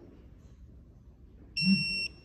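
Electronic torque wrench giving one steady high beep, about half a second long near the end, as it reaches its preset 30 foot-pounds.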